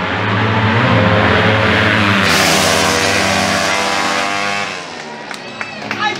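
Two drag-racing Suzuki Raider R150 motorcycles passing at full throttle, loudest in the first half and fading away about three-quarters of the way through. Crowd voices follow near the end.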